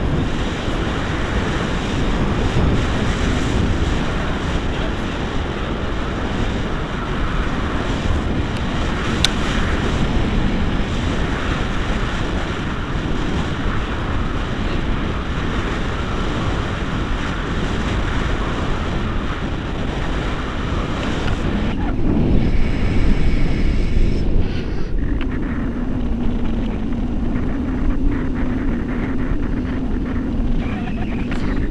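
Airflow rushing over an action camera's microphone during a tandem paraglider flight: a loud, steady wind roar. The top end thins out a little after twenty seconds, and a steady low hum joins in the last few seconds.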